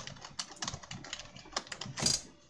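Typing on a computer keyboard: a rapid, uneven run of keystroke clicks.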